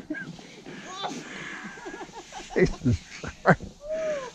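A person laughing in several short bursts in the second half, ending in a spoken word.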